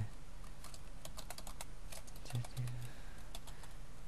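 Typing on a computer keyboard: irregular runs of quick key clicks.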